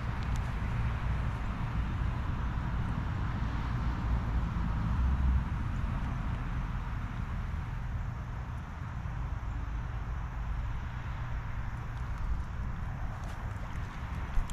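Steady outdoor background noise: a low, fluctuating rumble with an even hiss over it, and a few faint ticks near the end.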